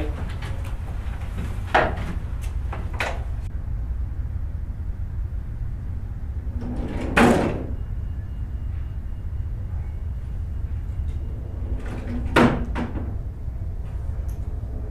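A few short knocks and thuds like a door or cupboard being shut, over a steady low hum. The loudest comes about seven seconds in and another near twelve seconds, with two fainter knocks in the first few seconds.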